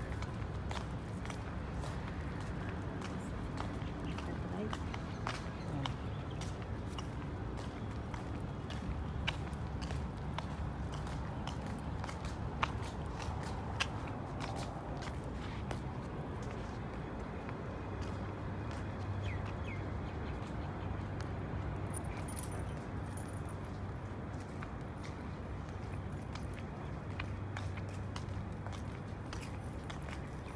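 Outdoor walking ambience: a steady low hum with irregular footsteps and faint indistinct voices.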